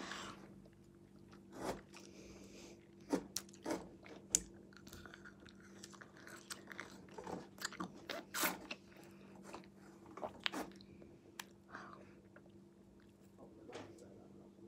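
Faint mouth sounds of biting and chewing a frozen blueberry ice lolly: scattered small crunches and clicks of ice, a few louder ones past the middle, over a faint steady hum.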